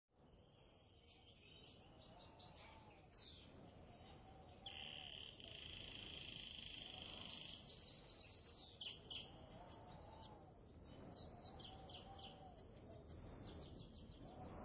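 Faint birdsong ambience: scattered short high chirps and quick trills over a low background hiss, with one long steady high note from about five to seven and a half seconds in.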